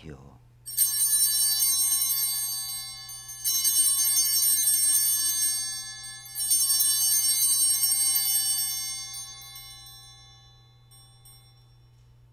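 Altar bells (Sanctus bells) rung three times, each a bright jingling peal that rings on and fades before the next. They mark the elevation of the host at the consecration.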